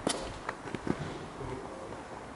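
Low background noise with a few faint clicks and taps in the first second, then steady quiet.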